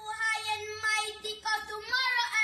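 High, child-like singing voice holding and bending notes, with no beat underneath.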